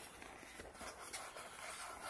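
Faint handling sounds as a stainless steel smartwatch is lifted out of its cardboard box insert, with a few soft rubs and bumps.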